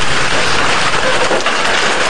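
A wheel loader's bucket pushing down a kiosk: a loud, steady clatter of corrugated metal sheets and debris collapsing.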